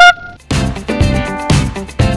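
A short, loud toot of a small handheld horn, one held note lasting about half a second, sounded as a start signal. Upbeat funk-style background music comes back in straight after it.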